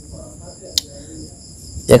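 Steady high-pitched trilling of insects in the background, with a single sharp click about three-quarters of a second in. A man's voice resumes near the end.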